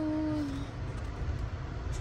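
Steady low rumble of a car's cabin on the move, road and engine noise, with a drawn-out spoken word trailing off in the first half second.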